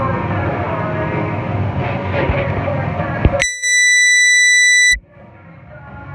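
Rock music playing over gym noise, cut off about three and a half seconds in by one loud, steady electronic beep lasting about a second and a half. After the beep the music comes back quietly and grows louder.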